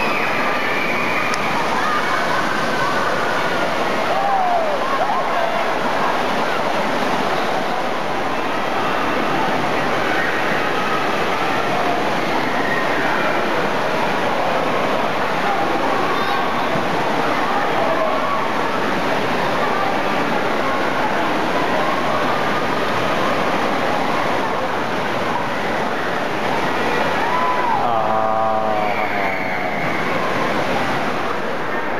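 Indoor water park din: a steady rush of splashing and pouring water with children's distant shouts and chatter mixed in. Near the end one voice calls out more clearly.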